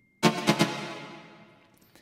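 Techno synth stab played back through a reverb placed straight on the track rather than in a parallel compressed chain. A hit about a quarter second in, with a couple of quick repeats, then a long reverb tail that fades away.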